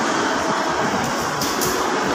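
Steady din of a busy mall arcade area, with machines and people blending into a dense, even noise. A couple of brief hissy strokes come about one and a half seconds in.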